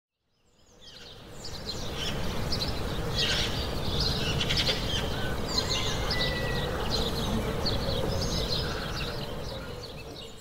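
Birds chirping and whistling over a steady outdoor background noise. It fades in about a second in and eases down near the end.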